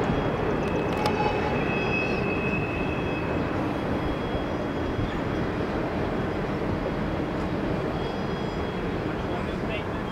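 Long intermodal freight train's cars rolling along the curve: a steady rumble of steel wheels on rail that slowly fades as the train moves away, with a thin high tone over it for a couple of seconds near the start.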